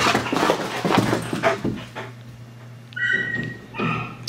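A dog scrambling and scuffling on carpet close to the microphone, then a short high-pitched squeak about three seconds in.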